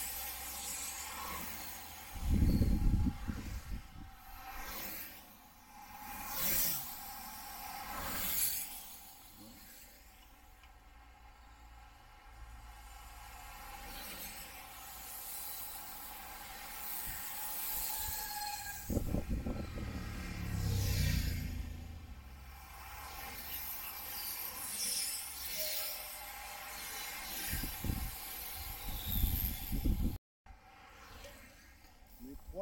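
Road racing bicycles passing close by one after another, each a brief rushing whoosh of tyres on asphalt, with several loud gusts of wind buffeting the microphone.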